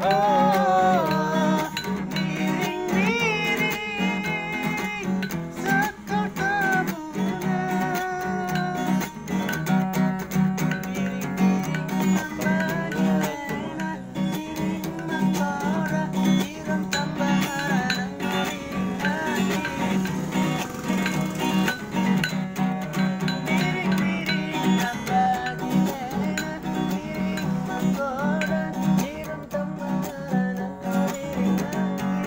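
Acoustic guitar strummed steadily as accompaniment to a man singing a song.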